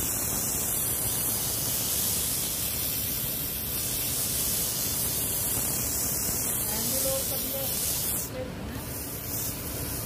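Sandpaper held by hand against a wooden rolling pin spinning on a lathe: a steady hiss over the lathe's low running sound, easing a little about eight seconds in.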